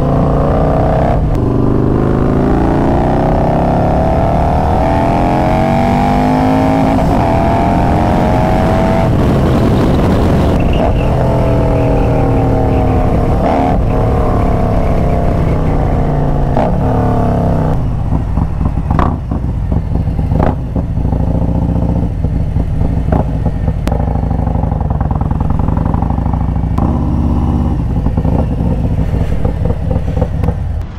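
Harley-Davidson Road Glide's V-twin engine under way, its pitch climbing in several pulls as it accelerates through the gears, then running lower and slower for the last stretch with a few sharp clicks.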